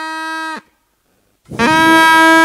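Plastic drinking-straw reed pipe being blown, its stretched-thin, angle-cut tip snapping shut and springing open to set the air in the straw vibrating. Two held notes of the same steady pitch: the first ends about half a second in, and a louder one starts about a second and a half in.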